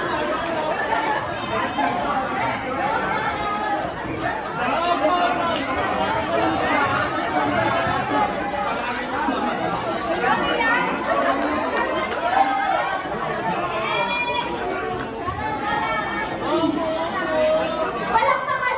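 Crowd chatter: many people talking over one another at once, at a steady level throughout.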